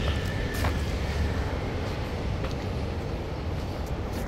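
Street ambience: a steady low rumble with an even hiss, broken by a few faint ticks.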